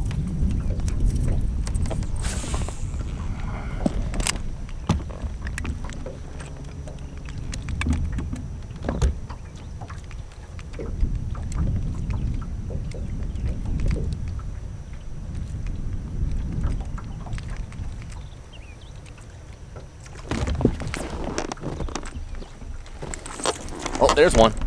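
Wind and water noise around a small fishing boat: an uneven low rumble with scattered clicks and knocks, and a louder stretch of handling noise near the end.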